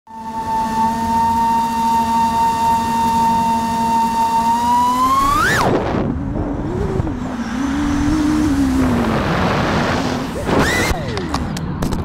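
FPV racing quadcopter's brushless motors whining steadily, then sweeping sharply up in pitch as the throttle is punched and dropping away into a rushing noise with a low wavering tone during the dive. Near the end a short rising whine as the throttle is punched to pull out, then a few sharp knocks as the quad hits the ground and crashes.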